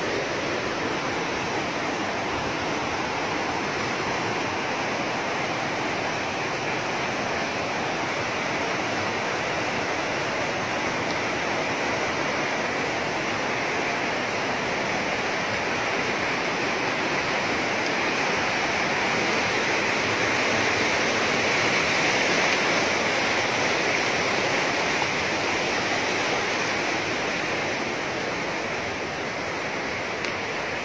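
A fast, muddy river rushing through rapids: a steady noise of churning white water, swelling slightly about two-thirds of the way through.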